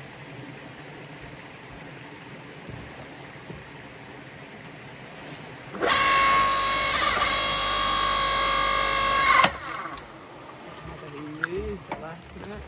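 Forest Master electric log splitter's motor and hydraulic pump running for about three and a half seconds, a loud steady whine that starts and stops abruptly, as the ram drives a log onto the wedge.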